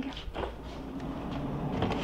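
Soft, steady rustling and handling noise with a few faint ticks, as of things being moved about off to one side.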